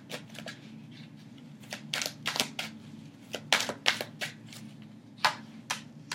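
A tarot deck being overhand-shuffled between the hands, the cards clicking and slapping together in four short flurries.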